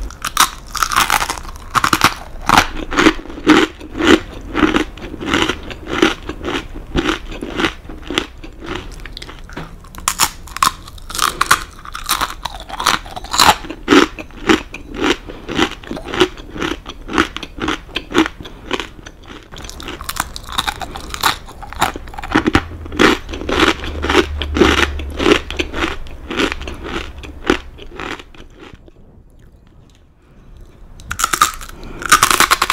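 Close-up crunchy chewing of a crisp baked cheese cracker set with kaki no tane rice crackers. Fresh bites come every several seconds, each followed by a run of quick crunching chews, several a second. The chewing fades out near the end.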